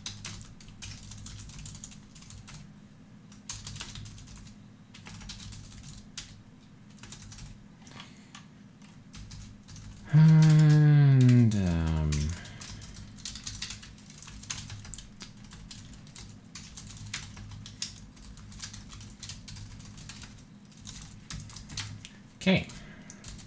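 Typing on a computer keyboard in quick, uneven runs of key clicks. About ten seconds in, a man hums one long note that falls in pitch over about two seconds.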